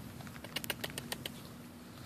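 Puppy's claws clicking on concrete as it gets up and starts to walk: a quick run of about eight to ten light clicks within under a second.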